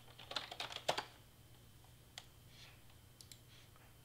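Typing on a computer keyboard: a quick run of keystrokes in the first second, ending in one louder stroke. A few single clicks follow later.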